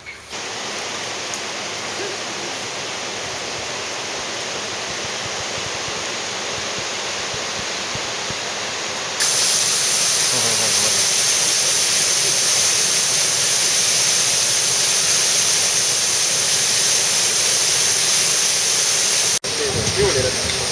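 Waterfall: a steady rush of falling water. About nine seconds in it jumps abruptly to a louder, brighter rush, and there is a momentary dropout near the end.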